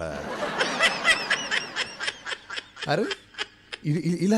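A person laughing, a run of quick repeated laughs lasting about three seconds and trailing off shortly before the end.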